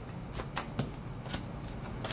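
Tarot cards being shuffled by hand: a few soft, irregular flicks and taps of the cards.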